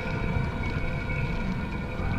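A low, steady rumbling drone with faint held tones, the kind of sustained background score laid under a drama scene.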